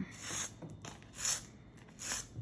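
Thread being drawn through a pine needle coil and its fabric base, heard as two short hissy swishes, the second, about a second in, the louder.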